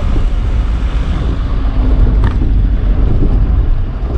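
Loud, steady low rumble of engine and road noise inside a vehicle's cabin while driving over a rough, broken road, with a single sharp click or knock about two and a half seconds in.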